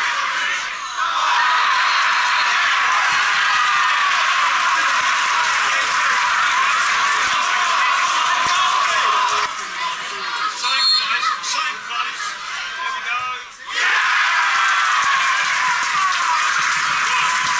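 Football crowd shouting and cheering from the stands, with the noise broken up at the highlight edits about a second in and from about ten to fourteen seconds in, then rising again near the end as a goal goes in.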